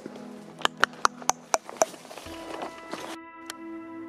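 About seven sharp snaps of dry twigs and brush underfoot over a second and a half, as someone pushes through dense scrub. Then soft background music with held tones comes in, and the outdoor sound cuts off about three seconds in.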